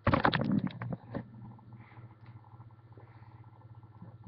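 Popcorn being chewed close to the microphone: a loud burst of crunching right at the start, then a few quieter crunches.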